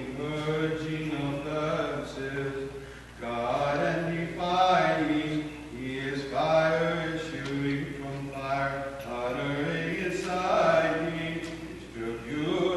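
Byzantine chant: a low male voice chanting in long held phrases that move slowly in pitch, with a short breath-pause about three seconds in.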